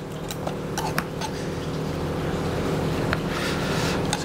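Steady mechanical hum of commercial kitchen equipment, made of several low level tones, growing slightly louder. A few faint clicks of a knife against a plastic cutting board in the first second and once more near the end.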